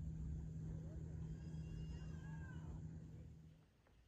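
A steady low motor hum that fades away near the end, with a few short high chirps in the middle.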